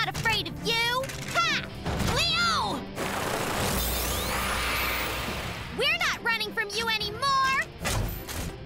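Cartoon battle soundtrack: strained wordless shouts and cries, then a rumbling, hissing effect lasting about three seconds from roughly three seconds in, then more cries near the end, over background music.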